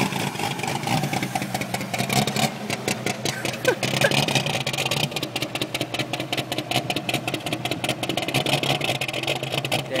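1951 International pickup's engine with a three-quarter race cam running as the truck moves off slowly, a steady rapid pulsing from the exhaust that grows a little stronger a few seconds in.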